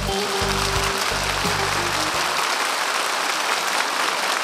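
The song's backing music ends on held low notes that stop about two seconds in, under steady audience applause that carries on after the music has stopped.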